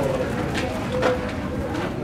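A bird making a few short, low cooing calls, faint over steady background noise.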